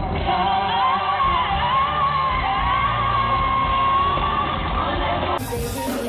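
A female pop singer's live concert vocal with band backing: quick vocal runs leading into a long held high note. Near the end it cuts abruptly to another live performance clip.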